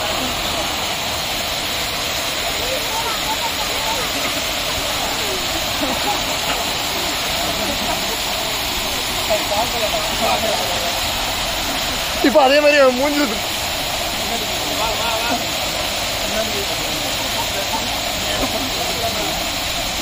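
Small waterfall pouring over a low stone weir, a steady rush of falling water. A person's voice calls out loudly over it about twelve seconds in.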